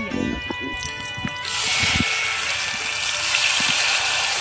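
Wet spice paste poured into hot oil in an aluminium kadai, sizzling loudly from about a second and a half in.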